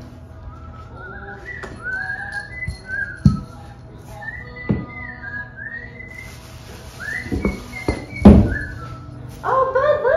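A whistled tune of short, sliding, rising notes, broken by a few knocks and a loud thump near the end as cat-tower parts are handled on a wooden floor.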